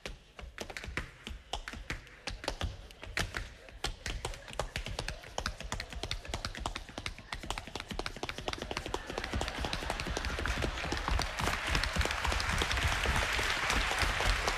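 Tap shoes striking a stage floor in quick runs of sharp taps during a dance routine. From about two-thirds of the way in, audience applause builds up under the taps.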